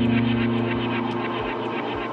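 Electronic music from a DJ mix: a deep, sustained bass drone that slowly fades, over steady high ticking percussion.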